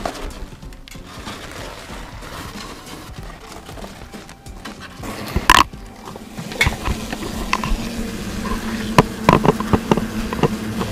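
A sharp knock about five and a half seconds in, then a steady low buzz with scattered clicks: European hornets stirred up in their chimney nest as insecticide powder is puffed into it.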